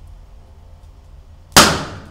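A sudden, very loud bang about one and a half seconds in, dying away over about half a second, over a low steady rumble.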